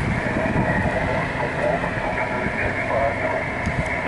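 Single-sideband receiver audio from a Yaesu FT-817ND tuned to the FO-29 satellite downlink: a steady, muffled hiss with a faint, garbled station voice buried in the noise, heard while listening for replies after a call.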